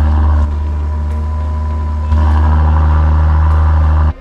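Land Rover Defender P400's inline-six turbo engine idling steadily through a QuickSilver performance exhaust. The sound drops a step in loudness about half a second in and comes back up about two seconds in.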